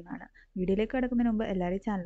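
A voice speaking in narration, with a brief pause about a third of a second in.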